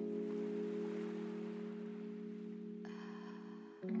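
Instrumental background music: a held chord slowly fades, and a new chord comes in near the end.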